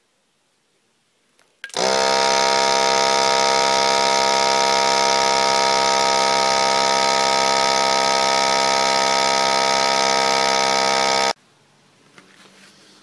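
Vacuum sealer's pump motor running with a steady hum as it draws the air out of the bag. It starts about two seconds in and cuts off suddenly near the end.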